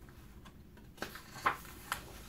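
A picture-book page being turned by hand: a soft paper rustle starting about a second in, with three light clicks as the page lifts and flips over.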